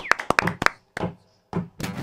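A few quick taps and clicks, then a short pause before acoustic guitars start strumming the opening of a song about one and a half seconds in.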